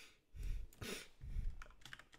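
A few separate keystrokes on a computer keyboard, each with a dull thud, about half a second apart, then lighter ticks near the end.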